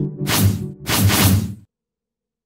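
Two whoosh sound effects in quick succession over a short music sting with a low bass note. The sound cuts off suddenly about three-quarters of the way through, leaving silence.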